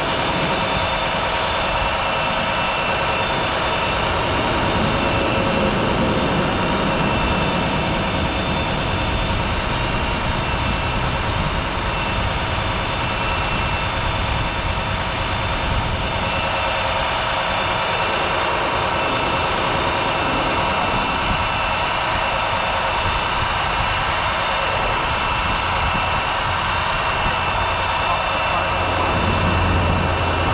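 A heavy diesel engine running steadily at a constant speed, a continuous drone with several held tones. A deeper hum strengthens near the end.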